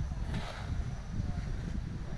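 Outdoor background noise: a steady low rumble with a brief soft rustle about half a second in.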